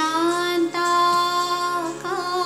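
A woman's voice sings long held notes in Indian classical style over a steady drone. She slides up into the first note, breaks briefly, then holds a second note that bends down near the end.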